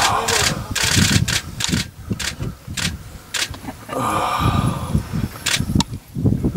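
Onlookers' low voices with a scattered string of sharp clicks, camera shutters firing as the animals are filmed.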